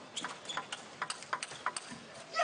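Table tennis rally: a quick, irregular series of sharp clicks as the celluloid-type ball is struck by the paddles and bounces on the table.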